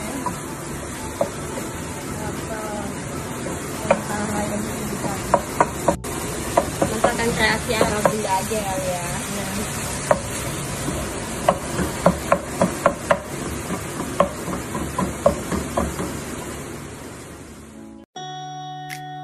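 Wooden spatula stirring diced chicken and vegetables sizzling in a frying pan, with many sharp knocks of the spatula against the pan.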